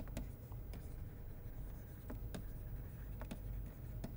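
Stylus tapping and scratching on a tablet screen while handwriting, heard as a scatter of faint, irregular clicks over a low steady hum.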